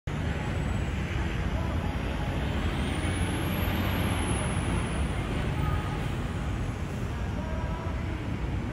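Steady hum of city traffic, a low rumble of cars and buses on the surrounding Midtown streets. A faint high whine rises and falls near the middle.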